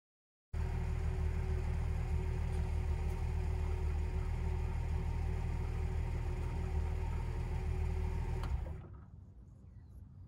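1963 Mercury Comet S-22's 170 cubic-inch straight-six idling steadily. It cuts in abruptly just after the start and drops away suddenly near the end, leaving a faint low rumble.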